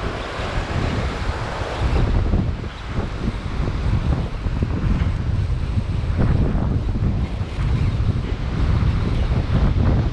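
Wind buffeting the microphone in gusts over the steady wash of surf breaking on a sandy beach.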